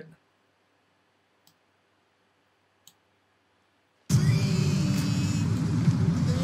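Near silence broken by two faint mouse clicks, then music from the timeline playback starts suddenly about four seconds in and carries on steadily.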